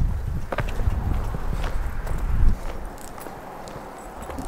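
Indian Challenger V-twin motorcycle under way, a low uneven rumble of engine and wind buffeting on the microphone that eases off about three seconds in.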